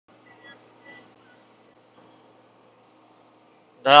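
Faint bird chirps and one short rising whistled call over a low steady hum. A man's voice comes in at the very end.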